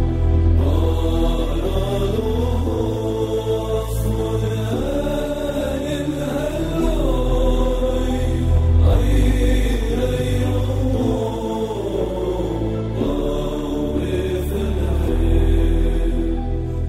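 Chanted vocal music over a steady low drone. The voice holds long notes and slides between them.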